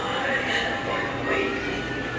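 Indistinct background voices over a steady low hum, with faint thin tones drifting in pitch.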